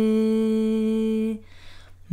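A solo voice holding one long, steady sung note of a Tamil devotional hymn in lullaby style. The note stops about a second and a half in, leaving a short pause before the next line.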